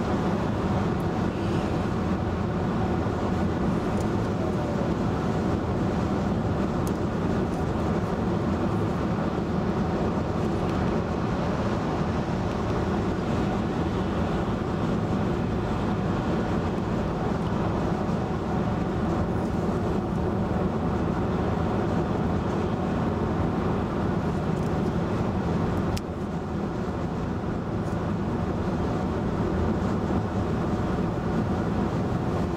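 Steady road and tyre noise heard from inside the cabin of a 2011 VW Tiguan cruising at highway speed. The noise dips slightly in loudness near the end.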